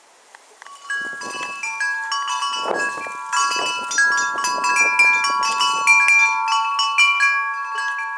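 Wind chimes ringing in a breeze, many overlapping, long-ringing tones struck at random, starting about a second in, with short gusts of wind noise.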